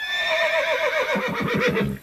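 A horse whinnying: one long quavering call that starts high, falls, and dies away just under two seconds later.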